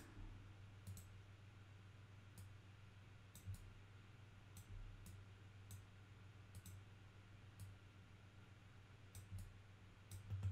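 Near silence with a low steady hum, broken by about a dozen faint, scattered computer mouse clicks.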